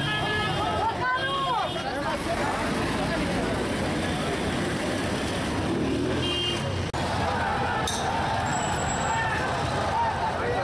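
Street crowd and traffic: many voices and shouts over the noise of running vehicle engines, with a couple of short high beeps.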